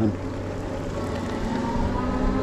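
Yadea Trooper 01's 750-watt hub motor and tyres under way at speed: a steady whine and hum over a low rumble. A faint whine rises slowly in pitch about a second in.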